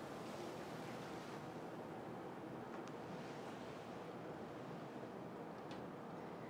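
Faint, steady room hiss with a couple of faint clicks.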